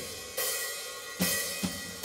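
A drum kit's cymbals and hi-hat struck a few times, each hit ringing and fading, counting the band in at the start of a song.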